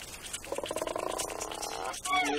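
Cartoon polar bear's long, strained grunt, held for about a second and a half and starting about half a second in, as he forces his head into a too-small igloo entrance.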